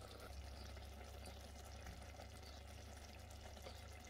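Very faint, steady simmering of a tomato ragu in an Instant Pot, with a low steady hum beneath.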